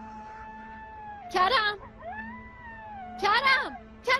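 Jackals howling outside: long gliding howls broken by two louder, wavering wailing cries.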